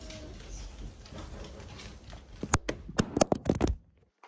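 Low steady room rumble, then a quick run of about eight sharp taps and knocks in the last second and a half.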